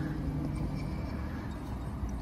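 Steady low background rumble with no distinct click or tool sound.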